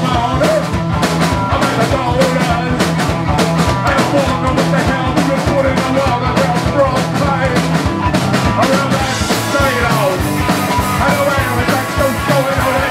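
A garage punk band playing live: a fast, steady drum beat under electric guitar, with a singer shouting vocals into a handheld microphone.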